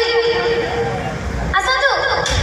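DJ sound system playing a track loudly. A long held, pitched note fades about a second in, then a quick falling pitch sweep comes near the end, over low bass.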